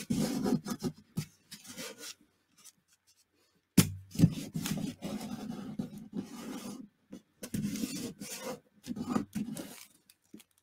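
Hands rubbing and smoothing paper, pressing a glued paper pocket flat onto a journal page in a series of rubbing strokes. The rubbing pauses briefly, and a single sharp knock comes a little before the middle.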